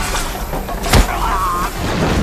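Film sound effects of a giant snake attack: a low rumble, a single sharp crash about a second in, and high wavering cries just after it.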